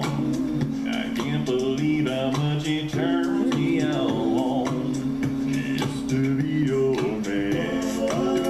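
A male a cappella group singing in close harmony, a low sustained bass voice under the upper parts, with short percussive clicks running through.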